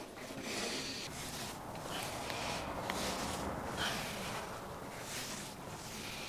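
A man lifting on a cable machine, breathing hard in a run of short, hissing breaths about one a second.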